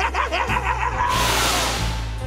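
A villain's cackling laugh trailing off over a low, steady music drone, then a loud rushing hiss about a second in: a teleport sound effect as the armoured monster vanishes.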